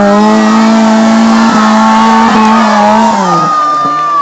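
Off-road jeep engine held at high revs under load as the jeep ploughs through deep mud, then falling in pitch as it eases off about three seconds in.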